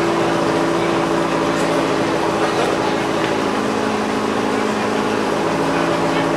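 Subaru Impreza WRC rally car's turbocharged flat-four engine running steadily at low revs while the car waits at the start.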